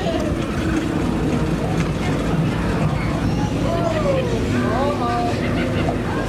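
A steady low rumble, with a few voices rising and falling about halfway through.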